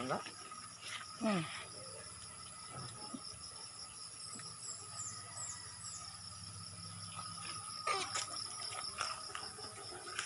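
Steady insect chorus, a constant high drone at several pitches, with a short rustle of handling noise about eight seconds in.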